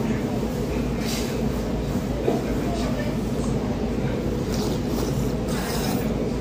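A man slurping soup and a fish slice off a spoon, a few short noisy slurps with the last near the end, over a steady low rumble.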